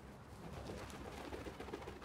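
Faint bird calls over a quiet outdoor background.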